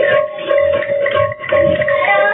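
Sambalpuri kirtan music: a drum beating under a steady held note, with light ringing percussion.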